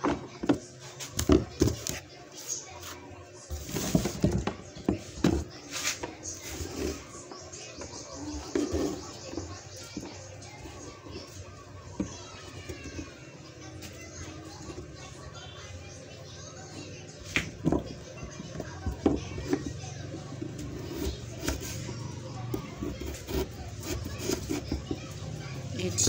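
Irregular clicks, taps and rustles of hands handling food and utensils at a cutting board, with short bits of a woman's voice now and then.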